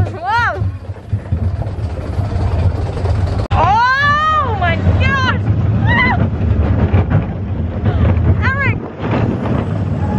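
Riders screaming and whooping on a small roller coaster, with a long rising-and-falling scream about four seconds in and shorter cries after it. Under them runs a steady low rumble of the moving coaster train and wind on the microphone.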